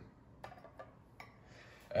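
A few light clicks of a stainless steel mesh strainer knocking against a ceramic mug as it is handled and set back on the rim.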